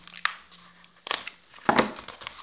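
Scissors cutting into a paper parcel wrapping: a few sharp snips, the loudest near the end, with paper rustling in between.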